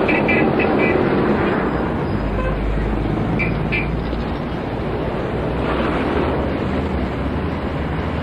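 Steady road traffic noise, with a heavier low rumble from a passing vehicle about two to four seconds in.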